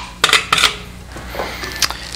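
Metal ice tongs taking ice cubes from a stainless steel ice bucket and dropping them into a glass tumbler: a quick run of clinks in the first second, then two more clinks near the end.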